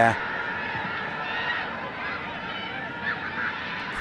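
Pitch-side ambience of a football match: a steady background hiss with faint shouts and calls from the players.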